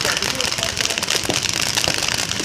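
Many paintball markers firing rapidly and overlapping, a dense crackle of shots with no pauses between them.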